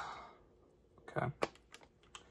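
A few faint clicks and taps of a phone and its plastic case being handled, one sharper click just after a spoken 'okay'.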